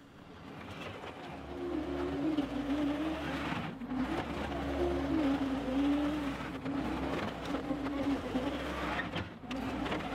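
John Deere 325G compact track loader's diesel engine running under load with a wavering pitch, with crushed driveway stone spilling from its tilted bucket onto the gravel. The sound fades in over the first couple of seconds.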